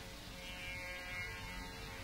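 Quiet musical drone: several held tones sounding steadily together over a low hum, with no singing yet.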